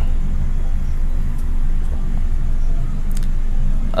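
A steady low background rumble and hum with no other clear sound, just a couple of faint ticks.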